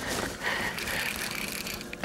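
Fishing reel drag buzzing steadily as a hooked tarpon runs and pulls line off the reel.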